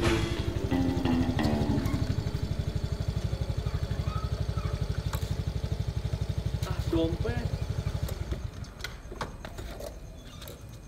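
Motor scooter engine idling with a steady low pulse, under music that fades out in the first two seconds. The engine sound dies away near the end.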